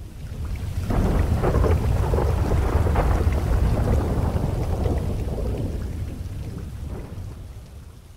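A long roll of thunder over rain. It swells in over the first second, rumbles deep and crackling for several seconds, and fades away near the end.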